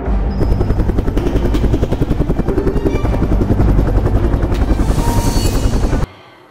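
Intro music for the title card with a loud, fast, even pulsing, about a dozen beats a second, that cuts off suddenly at the end.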